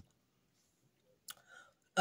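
Near quiet room tone broken by a single soft mouth click, a lip smack, past the middle, with a faint breath just after it, before speech resumes.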